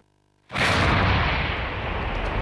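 An explosion on a hillside: a sudden blast about half a second in, followed by a continuous noisy rumble that does not die away.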